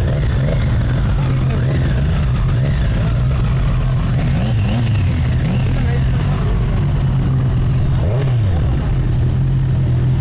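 Sport motorcycle engine running steadily at low revs as the bike rolls slowly, with voices in the background.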